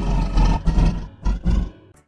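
A man roaring into the microphone through Voicemod's 'Kong' voice effect, which turns his voice into a deep, gravelly monster roar. There is one long roar, then two shorter ones.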